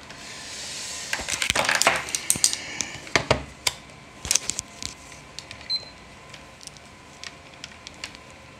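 Irregular clicks and taps of handling and multimeter probes on a laptop motherboard during a check for a short circuit, busiest in the first half, with one brief high beep a little before six seconds in.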